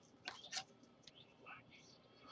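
Faint rustling of a plastic card sleeve and a trading card being handled by gloved hands, with two short rustles early on and a softer one about halfway through.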